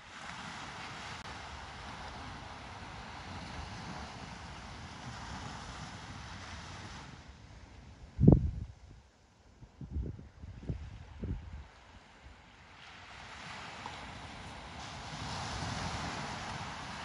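Outdoor wind and the steady wash of distant surf, dropping away for a few seconds midway. Wind buffets the microphone in four short low thumps about eight to eleven seconds in, the first the loudest.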